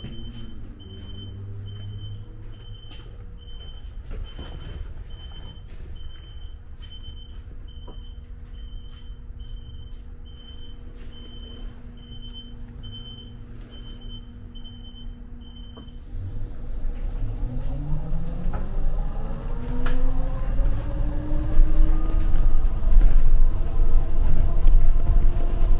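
Inside a shuttle bus, a short high warning beep repeats about once a second over a steady hum, then stops about two-thirds of the way in. The bus then pulls away, its drive note rising in pitch and the road rumble growing louder as it gathers speed.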